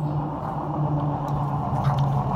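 A steady low mechanical hum with a few held low tones.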